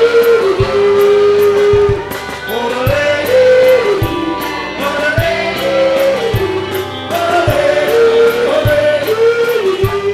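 A live country band and a male singer performing a song: a sung melody with long held notes over guitars and drums.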